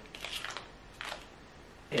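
Soft rustles in the first half-second and a light tap about a second in, as small cosmetic packaging is handled and set aside.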